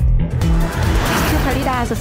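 Television show theme music with a steady bass beat, then a swelling whoosh transition effect about halfway through, after which a voice starts speaking near the end.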